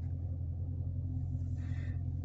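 Dodge Challenger Scat Pack's 392 HEMI V8 idling, a steady low rumble heard from inside the closed cabin.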